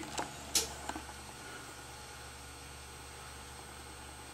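Hands lifting a soft clay bowl off a pottery wheel head, with a few soft taps in the first second. A faint steady machine hum runs underneath.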